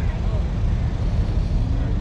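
Jeep Grand Cherokee SRT V8 engines idling, a deep steady rumble.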